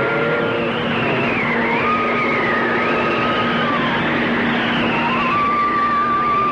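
Film soundtrack music: held melodic notes that slide from pitch to pitch, over a steady drone and a dense noisy wash.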